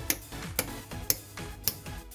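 Rocker switches on a switch panel clicked on one after another, four sharp clicks about half a second apart, each putting another incandescent bulb on the LM2596 buck converter as load. Background music plays underneath.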